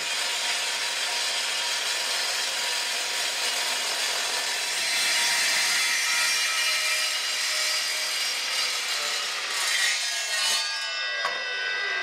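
Evolution steel-cutting miter saw cutting through rusty rectangular steel tube, a steady, loud grinding cut with a ringing whine. In the last two seconds the blade's pitch falls as it spins down after the cut is finished.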